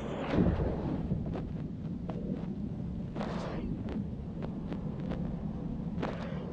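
Footsteps on an old wooden floor: scattered light knocks and a couple of short scuffs, over a steady low rumble on the microphone.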